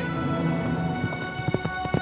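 Orchestral film score holding sustained chords, with horses' hooves clopping at a walk joining in about halfway through.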